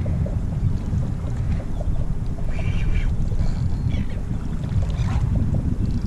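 Wind buffeting an action-camera microphone over open water: a steady low rush with no other clear sound standing out.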